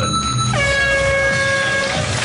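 Game show start horn blaring for about a second and a half, a steady chord of several tones, signalling that the one-minute round has begun. Just before it a short rising sweep plays, over the show's background music.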